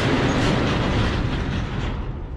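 Overhead sectional shop door rolling down shut on its tracks, a loud continuous rattling.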